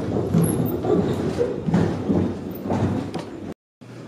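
Wooden anti-roost bar of an old chicken feeder being turned by hand, giving irregular wooden knocks and thuds as it rolls in its end brackets. The sound cuts off suddenly near the end.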